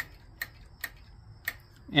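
Light metal clicks, about two a second, as the throttle lever and spring linkage on a Briggs & Stratton single-cylinder engine's control plate are worked back and forth by hand, with the governor deleted.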